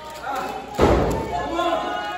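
Spectator voices calling out at a wrestling match, with one loud thud a little under a second in.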